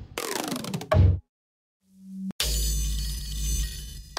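Trap drum-kit percussion one-shot samples played one after another. First comes a sound whose pitch falls over about a second, then a short, loud low hit. A low hum follows, cut off by a click near the middle, and then a longer hit with deep bass and a bright, noisy top.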